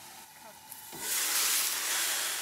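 Manila clams in sauce sizzling and steaming in a stainless steel pan: a faint hiss at first, then a sudden, much louder sizzle about a second in as the lid comes off.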